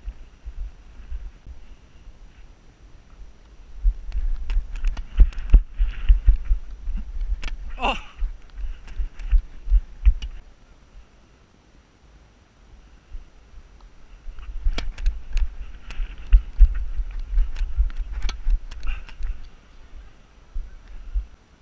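A tennis rally heard through a head-mounted action camera: thumping from the player's running steps and head movement, with sharp racket-on-ball hits. There are two stretches of play with a quieter pause between them, and a short exclamation partway through the first.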